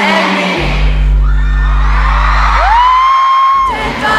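Live pop concert music heard from the crowd in an arena: a deep, steady bass comes in about half a second in under a screaming crowd. Near the end one high voice rises and holds a long scream-like note.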